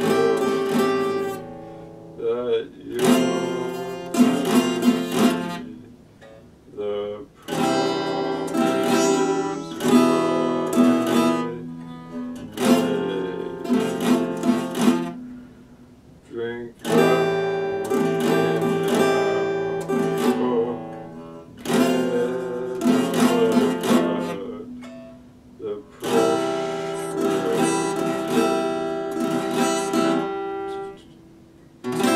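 Epiphone acoustic-electric guitar strummed in chord phrases of a few seconds, each followed by a brief pause, with a man's voice singing along.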